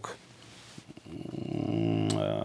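A man's low, drawn-out hesitation sound, a held 'mmm' or 'ehh' filler in his voice, starting about halfway through after a near-silent pause.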